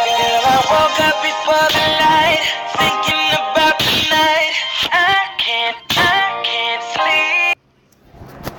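A song with a singing voice over music plays steadily, then cuts off suddenly near the end.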